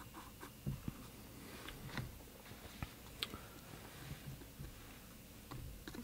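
Faint scratching of a wooden school pencil drawing on textured watercolour paper, with a few light ticks of the pencil at irregular moments.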